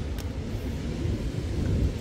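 Steady low rumble of wind on the microphone, with a brief click just after the start.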